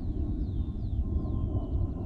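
Steady low rumble of outdoor wind on the microphone, with a few faint, short high chirps that fall in pitch.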